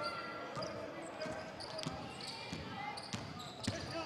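A basketball being dribbled on an indoor court: a string of sharp bounces, with players' shoe squeaks and voices in the arena behind.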